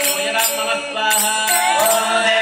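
A group of women singing a devotional song together, with small hand cymbals clinking in time.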